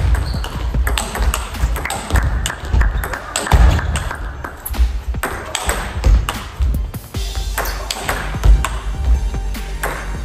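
Table tennis rally: the ball clicking off the rackets and the table in a quick, irregular run of sharp ticks. Background music with a heavy bass runs underneath.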